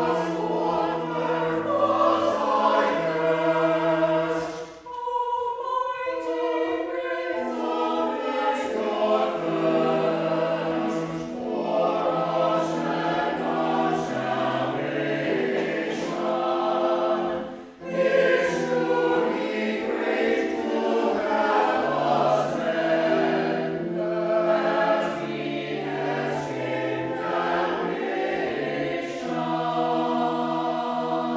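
Mixed church choir of men and women singing in parts, with sustained notes and two short breaks between phrases.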